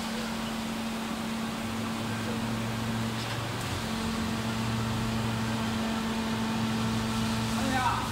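Injection moulding machine running a cycle with its preform mould closed: a steady machine hum, with a lower tone joining about two seconds in and a short break in the hum a little after three seconds. A brief rising sound comes at the very end.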